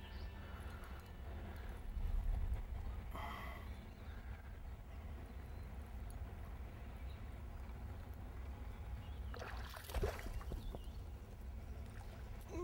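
A steady low outdoor rumble with faint water sounds while a fish is played on the line. Just before the end comes a brief splashy burst as the hooked fish thrashes at the surface beside the boat.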